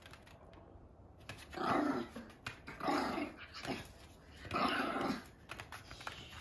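A Maltese growling three times in play, each growl under a second long, as it tugs on a plush teddy bear in a game of tug-of-war.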